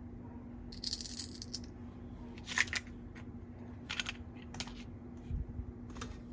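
Two halves of a plastic toy watermelon slice handled: a short rasp of their hook-and-loop fastener being pulled apart about a second in, then a few light plastic clicks and taps and a soft thump near the end.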